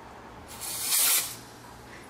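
Aerosol spray can of olive oil (Rukooil) giving one short spray: a hiss lasting under a second, starting about half a second in.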